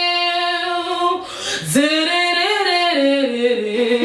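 A woman singing unaccompanied in long held notes, breaking off briefly about a second in, then going on with a melody that steps lower near the end.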